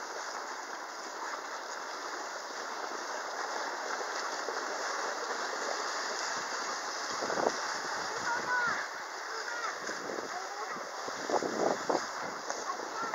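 Steady hiss of skate blades and wooden chair legs sliding over ice as a line of small children is towed along. Children's voices come in briefly about two-thirds of the way through and again near the end.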